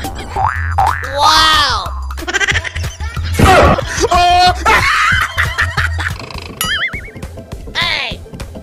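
Comedic background music with a steady low bass, overlaid with a run of cartoon sound effects: boings and sliding, wobbling whistle-like tones, one after another.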